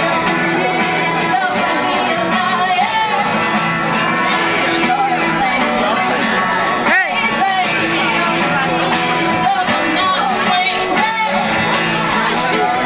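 A woman singing live while strumming an acoustic guitar, amplified through a PA speaker.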